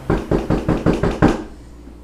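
Rapid knocking on a door: about seven quick knocks in just over a second, then it stops.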